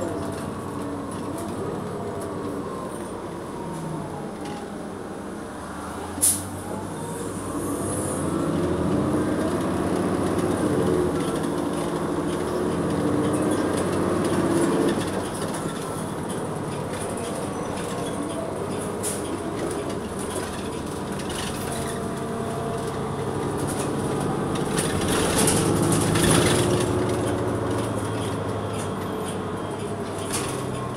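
Cabin sound of a New Flyer XN40 bus under way, its Cummins Westport ISL-G inline-six natural-gas engine and Allison B400R automatic transmission running, rising in pitch and level about eight seconds in and again near twenty-five seconds. A sharp knock about six seconds in.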